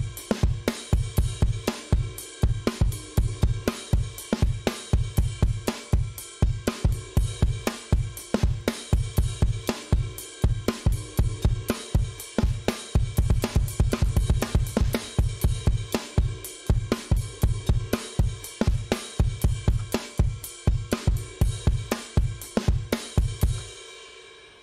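UJAM Virtual Drummer BRUTE virtual drum kit playing a 90s-style rock groove at 116 bpm, with kick, snare, hi-hat and cymbals in a steady pattern. The pattern plays while its micro-timing settings (speed, feel, swing, humanize) are adjusted, and it stops shortly before the end.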